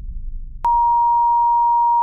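A steady electronic beep at one pure pitch of about 1 kHz, switching on with a click about two-thirds of a second in and holding level for about a second and a half. Before it, a faint low rumble fades away.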